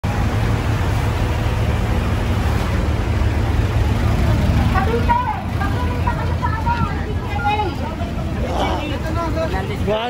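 Engine of a parked fire truck running steadily with a deep rumble. From about five seconds in, a crowd's overlapping voices come in over it.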